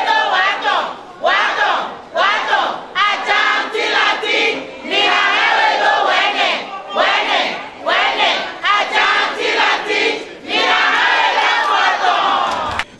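A crowd of mostly women's voices chanting and shouting loudly together, in short phrases with brief breaks between them.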